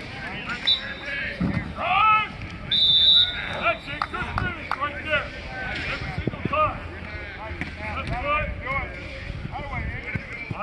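Several voices shouting and calling out on a football practice field. Two short whistle blasts sound, about a second in and around three seconds in. Thuds come from linemen hitting blocking pads and sleds.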